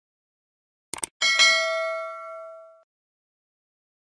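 Subscribe-button sound effect: a quick double mouse click about a second in, then a bright bell ding that rings out and fades over about a second and a half.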